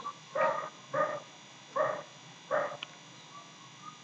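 A dog barking: five short barks in quick succession over about three seconds.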